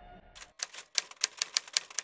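Typewriter keystroke sound effect: a quick, slightly uneven run of sharp clacks, about six a second, starting about a third of a second in.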